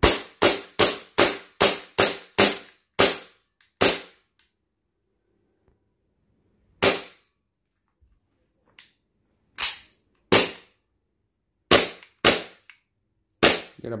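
KJ Works CZ P-09 gas blowback airsoft pistol firing on gas. Nine quick shots come in the first four seconds, about two or three a second, then six more at irregular gaps of roughly half a second to three seconds.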